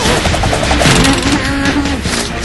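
Cartoon soundtrack: a dense, rapid rattling sound effect with a low rumble under it, over background music.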